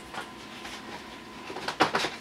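Quiet room noise with a faint steady hum, and a few short clicks near the end.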